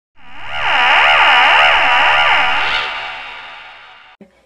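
A synthesized intro sound effect: an echoing electronic tone swells in, and its pitch warbles up and down about twice a second before it fades out.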